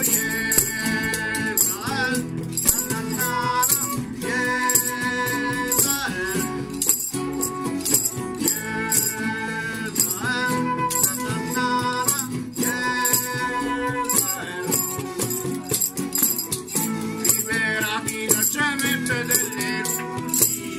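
Live acoustic instrumental passage: a flute plays the melody in held notes over strummed acoustic guitars, with a shaker keeping a steady beat.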